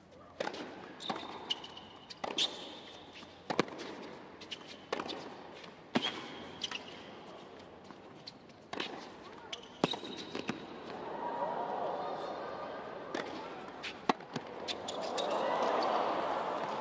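A tennis rally on a hard court: sharp racket strikes and ball bounces about every second, with short high shoe squeaks. Crowd noise swells over the last few seconds as the point goes on.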